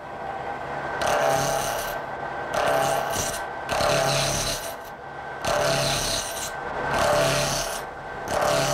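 A turning tool cutting a soft composite plastic pen blank spinning on a lathe, throwing off chips and shavings in about five passes of roughly a second each, with short pauses between them. A steady thin high tone runs underneath.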